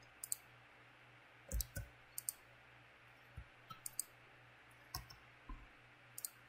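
Faint, scattered clicks of a computer mouse, some in quick pairs, over a faint steady low hum.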